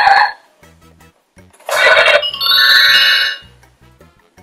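VTech Lustige Fahrschule toy driving wheel playing an electronic sound effect through its small speaker. About two seconds in there is a short noisy burst, which runs straight into a buzzy tone lasting about a second.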